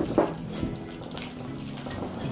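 Wire whisk beating an egg yolk into a thick chiffon-cake yolk batter in a glass bowl: rapid wet swishing and scraping against the glass. Two sharp knocks right at the start.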